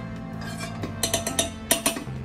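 Background music with steady low notes, and a metal spoon clicking and scraping on a non-stick frying pan several times in the second half while spreading ghee.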